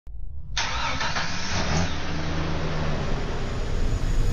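A vehicle engine running, its pitch rising briefly a little under two seconds in.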